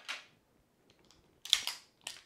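Handling noise from a 1911A1 pistol with its magazine removed, then a sharp metallic clack about one and a half seconds in as its action is worked; the action runs smoothly, like a well-oiled machine.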